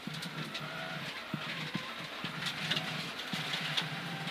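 A Mitsubishi Lancer Evolution X rally car's turbocharged four-cylinder engine running at a steady pitch, heard from inside the cabin over tyre and gravel noise, with a few short knocks.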